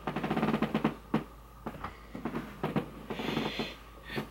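Handling noise from the recording camera being moved and knocked: a rattling scrape for about the first second, then a few separate knocks and clicks, with a short rustle just after three seconds.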